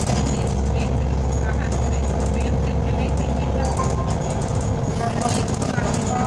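Cabin sound of an Irisbus Citelis 10.5 m CNG city bus on the move: the steady drone of its natural-gas engine with interior rattles, the low engine note changing about five seconds in.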